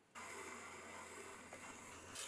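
Faint, steady scraping of a trimming tool shaving leather-hard clay from the base of an upturned bowl on a spinning potter's wheel, over the wheel's low hum.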